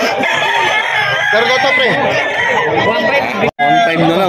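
Several gamecock roosters crowing over one another, continuously, with crowd voices beneath. The sound drops out for a split second about three and a half seconds in.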